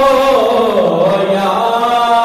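A man's voice chanting in a long melodious line into a microphone: a held note sinks in pitch around the middle and climbs back near the end.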